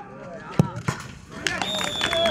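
A football kicked hard for a penalty: a sharp thud about half a second in, a second knock shortly after, then spectators' voices rising as the shot goes in.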